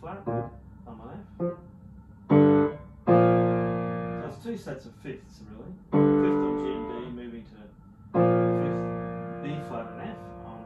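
Grand piano chords: a short one about two seconds in, then three struck and held chords, each left to ring and die away over two to three seconds.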